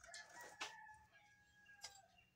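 A rooster crowing faintly: one long drawn-out crow that sags slightly in pitch. Two light clicks of wedges being moved in a steel bowl sound over it.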